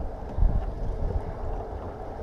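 Wind buffeting the microphone, an uneven low rumble with a stronger gust about half a second in.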